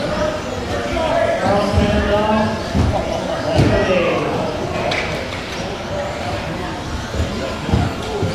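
Indistinct voices talking in a large, echoing hall, with a couple of sharp knocks in the middle.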